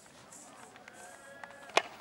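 Faint outdoor stadium background with a few faint held tones, then near the end a single sharp crack of a pesäpallo bat striking the ball hard.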